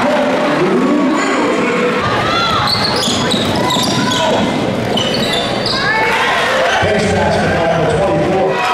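Basketball game sounds in a gym: the ball bouncing, sneakers squeaking in short high chirps, and players' and spectators' voices echoing in the hall. The background changes abruptly twice as the clips cut from one game to another.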